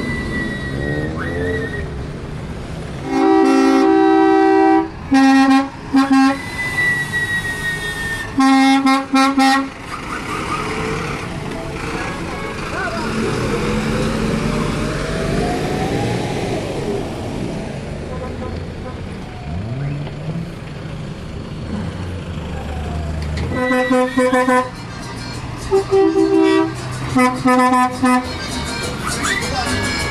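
City bus horns honking in a series of loud blasts, some long and some short, in two spells with a gap of about fourteen seconds, over the steady rumble of bus engines pulling away.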